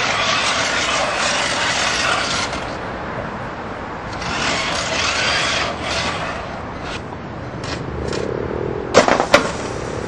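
Pneumatic-flipper combat robot under test: two stretches of loud rushing noise, then two sharp bangs less than half a second apart near the end.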